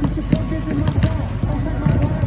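Basketballs bouncing on a hardwood gym floor as players dribble, several bounces, under a continuous voice.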